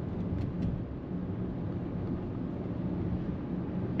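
Steady road and wind noise heard inside the cabin of a Hyundai Tucson plug-in hybrid cruising at highway speed, with a constant low rumble.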